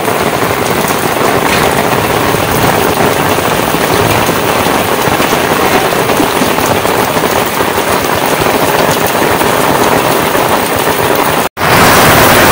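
Torrential rain pouring onto a paved street, a steady loud hiss of drops splashing on standing water.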